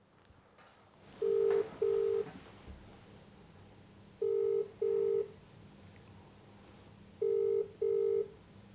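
Telephone ringback tone heard through a smartphone's speaker while an outgoing call rings: three double rings, each two short steady beeps, about three seconds apart.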